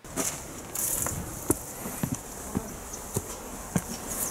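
Footsteps of a hiker climbing stone steps, a sharp step about every half second, over a steady outdoor hiss.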